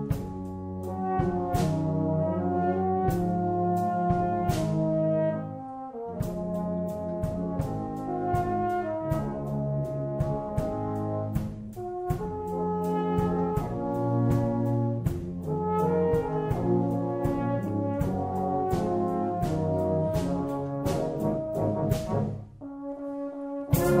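Brass band playing a slow ballad in sustained chords, with an E-flat tenor horn carrying the solo melody. The sound thins briefly a little before the end, then a louder sound starts right at the close.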